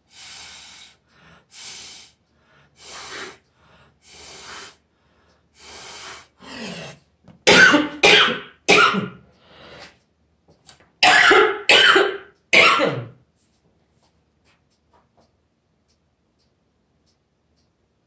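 A person coughing: a run of short, noisy breaths about once a second, then two loud fits of three coughs each.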